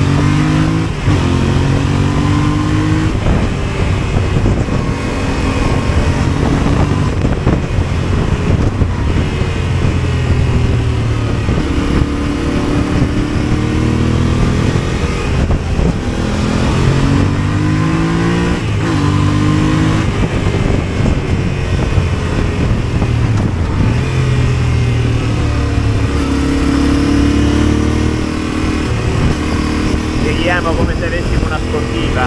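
Yamaha motorcycle engine under way, its pitch climbing and then stepping down again and again as the throttle is opened and gears are changed, with a steady rush of riding wind on the handlebar-mounted microphone.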